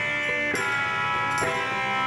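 Live rock band playing an instrumental stretch of a slow blues song: electric guitar and drums, with held notes changing about half a second in and again near one and a half seconds, and no singing.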